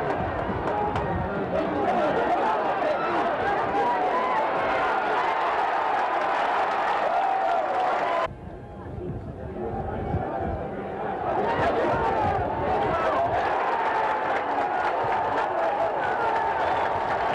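Football stadium crowd: a dense din of many voices shouting and cheering. The noise drops suddenly about eight seconds in and swells back up a few seconds later.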